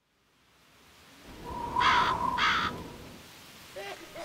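Two crow caws about half a second apart, over a low, dark rumbling ambience that swells up out of silence: a spooky sound effect.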